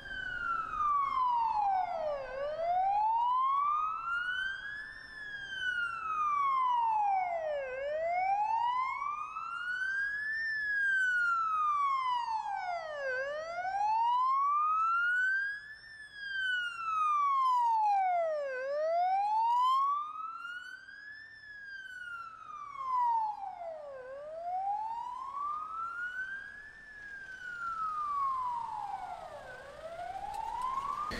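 Wailing vehicle siren escorting a funeral cortège, rising and falling slowly, about one full rise and fall every five and a half seconds, heard from inside a following car.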